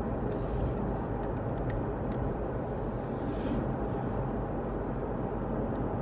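Steady road and engine noise inside a moving car's cabin, with a low even hum.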